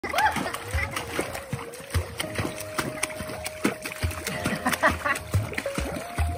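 Pool water splashing as a golden retriever puppy paddles in shallow water while being held, with many short irregular splashes.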